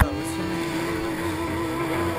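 Yamaha SuperJet stand-up jet ski's two-stroke twin engine held at high revs, a steady, slightly wavering whine, after a brief sharp click at the very start.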